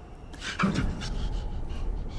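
A man gasps loudly about half a second in, then pants in quick, shallow breaths over a low rumble.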